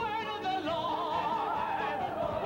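Singing with wide vibrato on long held notes, the pitch sinking slowly, over band accompaniment.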